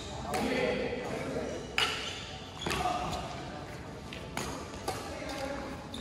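Badminton rackets striking a shuttlecock back and forth in a rally: about five sharp hits, roughly a second apart, each ringing briefly in the hall.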